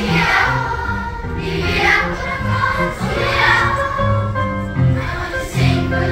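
A large choir of elementary-school children singing a song together, holding and changing notes in phrases, with steady low notes beneath the voices.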